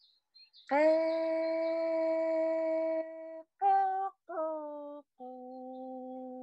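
A woman singing long, steady, held notes without words: one note sliding up into place and held for about two and a half seconds, two short notes, then a lower held note.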